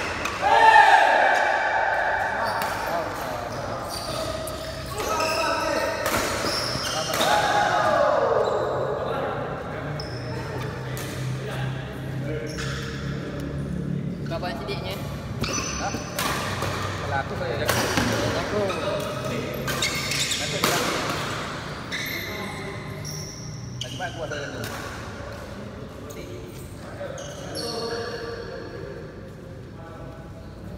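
Badminton doubles rally on an indoor court: sharp racket strikes on the shuttlecock and shoes squeaking on the court floor, with short gliding squeaks as players push off. The hits and squeaks thin out in the last few seconds.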